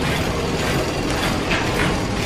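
Steady mechanical rattling and clanking, a clattering machine sound effect with no music over it yet.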